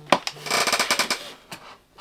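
Large cardboard advent calendar box being unfolded and its panel stood upright: one click, then a rapid run of cardboard crackling and clicking lasting under a second.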